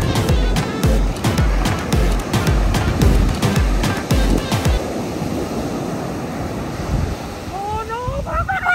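Background music with a steady beat of about two thumps a second, which cuts off suddenly about halfway through. It leaves the hiss of surf breaking on a sandy beach, and a voice starts near the end.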